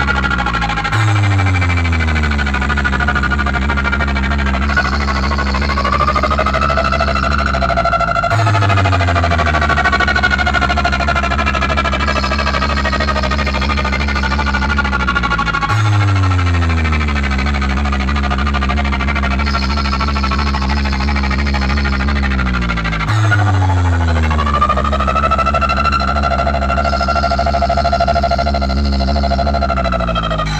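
DJ remix music played loudly through a large stack of bass cabinets and horn speakers during a sound check. A deep bass note slides down in pitch, restarting about every seven and a half seconds under held high synth tones.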